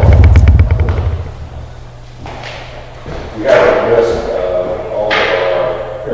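Handling noise: a quick rattle of knocks with heavy low thumps for about the first second. Indistinct voices follow from about halfway through.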